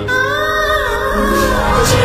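Background song: a singer holds one long, slightly wavering note over steady instrumental accompaniment, and a new sung phrase begins near the end.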